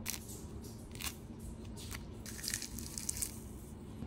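Thick, loose peel of a hallabong mandarin torn away from the fruit by hand: a few short, crisp rips and crackles, with a quick run of them a little after halfway.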